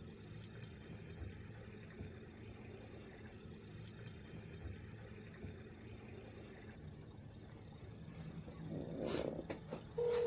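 Faint, steady low rumble. Near the end comes a short burst of rustling and a few sharp clicks as a mobile phone is handled to place a call.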